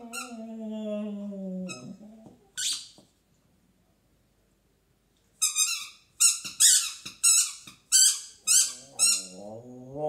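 Sharp high squeaks from a tennis-ball squeaker chewed by a black puppy: two early on, then after a pause a quick run of about two a second. A low howl falling slightly in pitch comes first, and a second low howl rising in pitch starts near the end.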